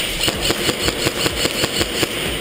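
Airsoft gun firing on full auto: a rapid, even string of shots at about ten a second.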